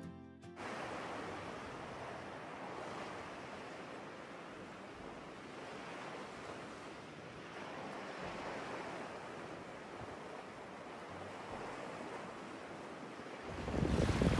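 Small waves lapping at a sandy lake shore: a steady wash of water. Music cuts off about half a second in, and near the end wind buffets the microphone and the sound gets louder.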